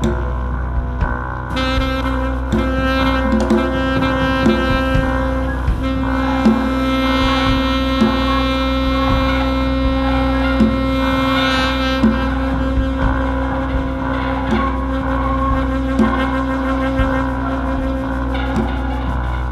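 Live saxophone holding a long sustained note over a low steady drone, with drum strikes falling about once a second; the held note thins out about two-thirds of the way through.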